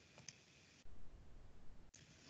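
Faint computer-mouse clicks over near-silent room tone, with a low rumble in the second half.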